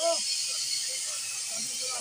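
Cutting torch hissing steadily as its flame works on the steel underframe of a derailed railway coach.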